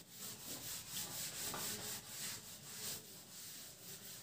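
A felt whiteboard eraser rubbed back and forth across a whiteboard in a run of soft, repeated swishing strokes.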